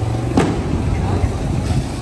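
Steady low rumble of street traffic, a vehicle engine running close by, with one sharp click about half a second in.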